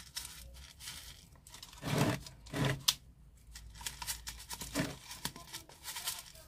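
Masato (decomposed granite grit) poured from a plastic scoop onto potting soil, the small stones sliding and clicking in short, irregular trickles.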